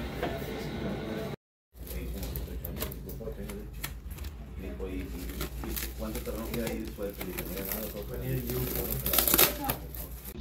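Plastic wrap crinkling and rustling as it is wound around a package by hand, with low voices talking underneath. A louder crackle comes near the end.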